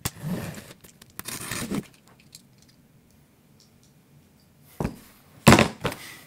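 Utility knife slicing through packing tape along a cardboard box's seam, in a few scraping strokes, then a pause. Near the end come a couple of short, sharp, louder cracks as the knife breaks.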